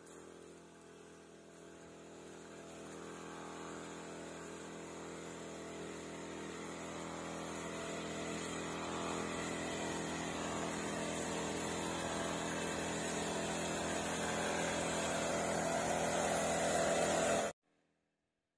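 Small engine of a motorised crop sprayer running steadily as it sprays a pigeon pea crop, growing gradually louder, then cut off suddenly near the end.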